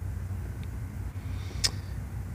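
Steady low rumble of an idling diesel truck engine, heard inside the cab, with one faint click about one and a half seconds in.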